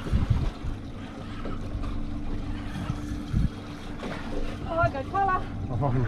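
A boat's engine idling with a steady low hum, under wind buffeting the microphone with a few low thumps. Brief voices break in near the end.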